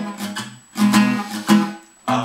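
Acoustic guitar strummed in chords, with strokes about every half second, dying away near the end.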